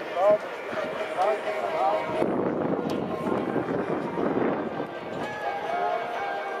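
Voices and music mixed together in a stadium, with a denser wash of voices in the middle and held musical tones near the end.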